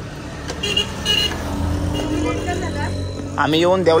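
Road traffic passing close by: a small vehicle's engine running, with two short horn toots about a second in. A voice starts near the end.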